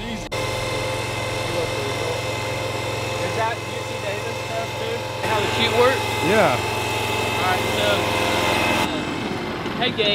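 Small engine of a truck-mounted hydraulic power unit for a squeeze chute, running steadily at a constant speed, with voices talking over it.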